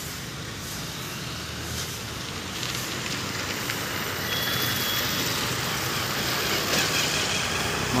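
Road traffic noise, a passing vehicle growing slowly louder through the second half, with a short high beep about four seconds in.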